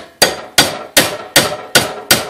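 Steel pliers tapping on a hot aluminum casting mold clamped in a bench vise, to knock a cast zinc ring blank out of it: six sharp metallic taps, a little over two a second, each ringing briefly. The blank is slow to come free because the mold's plug is not tapered all the way up.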